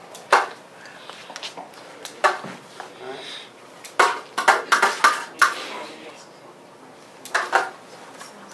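Sharp clinks of a serving utensil against a large glass bowl and serving plates as salad is handled, with a quick cluster of them about halfway through and a couple more near the end.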